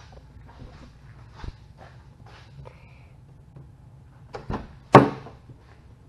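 A side door of a 1995 Toyota Land Cruiser Prado being opened: faint handling knocks, then a thump and a sharp latch clunk about five seconds in.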